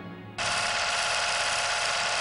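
A short tail of music dies away, then about half a second in a loud, steady buzz with a fast rattle cuts in sharply. It is the noise of an old film's countdown leader running before the commercial begins.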